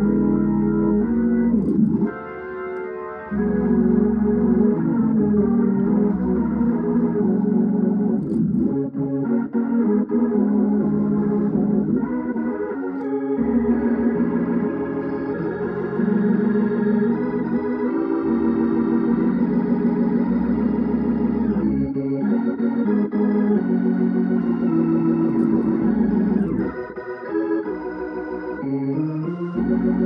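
Hammond organ playing a hymn in sustained chords over deep held bass notes, the chords changing every second or two. The sound drops briefly between phrases, about two seconds in and again near the end.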